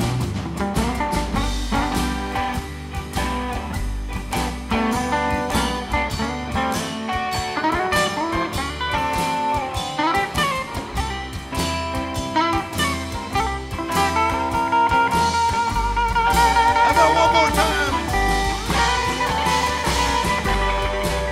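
Blues electric guitar solo over the band's bass and rhythm backing, with bent notes and, in the second half, a long held high note with vibrato.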